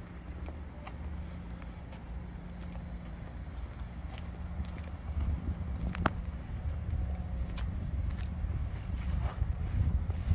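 Engine idling, a steady low rumble that grows louder about halfway through, with light footsteps and a few small clicks.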